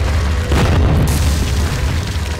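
Cinematic boom-and-crash sound effect of a stone wall bursting apart: a deep rumble, a heavy crash about half a second in, then a rush of crumbling, scattering debris.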